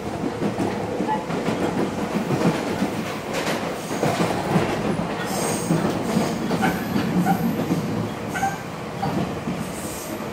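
Running noise inside an electric commuter train car: a steady rumble with rail-joint clatter and a few brief, high wheel squeals around the middle and near the end.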